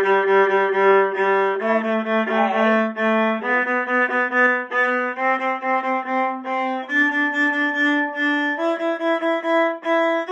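A G major scale bowed on a violin-family instrument held under the chin, climbing step by step from the open G string. Each note is played as several short, even bow strokes before the next step up, reaching the sixth note by the end.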